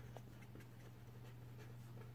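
Pen writing on paper, a series of faint short scratching strokes, over a steady low hum.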